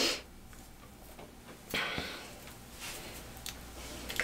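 Faint, brief rustles of hands parting and handling hair, the loudest about two seconds in, over a faint low room hum.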